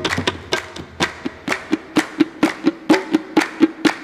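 Qawwali percussion passage with no singing: a hand drum is struck in a fast, even rhythm of about five strokes a second, many of them with a ringing pitched note, over hand clapping in time.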